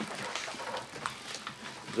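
Paper rustling as booklet pages are leafed through: a run of light, irregular rustles and crinkles.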